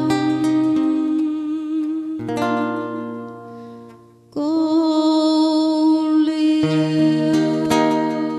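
A woman's singing voice holds long notes with vibrato over fingerpicked acoustic guitar. The music fades low a little before the middle, then a long sung note comes in sharply.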